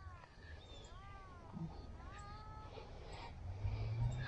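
Three short mewing calls, each rising and falling in pitch, about a second apart. A low steady hum comes in near the end.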